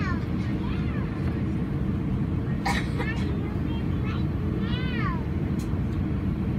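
Steady low rumble inside the cabin of an Airbus A320 moving slowly on the ground, with passengers' voices heard faintly over it now and then.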